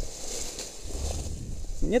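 Rustling and a low, wind-like rumble on the microphone of a body-worn camera, with a man's voice starting near the end.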